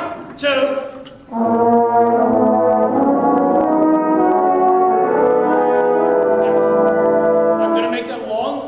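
A brass section playing slow, held chords, the notes shifting one by one as the harmony moves; it comes in about a second and a half in and falls away just before the end.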